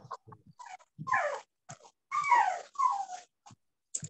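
Small dog whining over the call audio, several short cries that each slide down in pitch.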